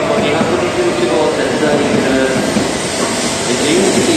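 E2 series Shinkansen train starting to move off from the platform, its running noise heard under platform announcements and voices.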